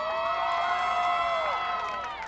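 Crowd cheering: many voices join in a long, high-pitched whoop that swells in together, holds, then slides down and fades near the end.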